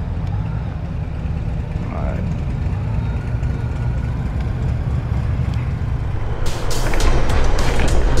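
Touring motorcycle engine running at low speed, heard from the rider's seat as a steady low rumble. About six and a half seconds in, this gives way to louder, rough wind noise buffeting the microphone at road speed.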